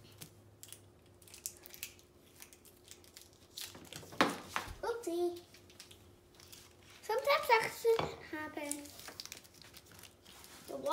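KitKat wrappers crinkling and tearing as they are ripped open by hand, in short irregular crackles with a sharper rip about four seconds in. A child's voice sounds briefly about five seconds in and again from about seven to nine seconds.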